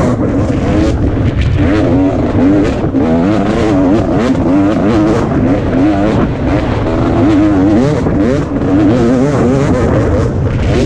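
2017 KTM 250 XC-W two-stroke single-cylinder dirt bike engine under load, its pitch rising and falling constantly as the throttle is worked along a trail, heard up close from the rider's helmet.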